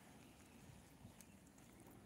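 Near silence, with faint footsteps on a concrete sidewalk.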